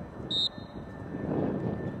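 An umpire's whistle gives one short, sharp blast to start the draw, over a low rumble of outdoor noise.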